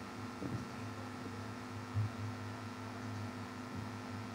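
Low steady hum with a faint hiss, the background tone of a video-call audio line, with a faint brief sound about two seconds in.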